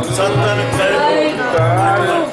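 Sikh kirtan: a man singing a devotional hymn to harmonium accompaniment, his melody gliding and ornamented, with a steady low held note sounding twice underneath.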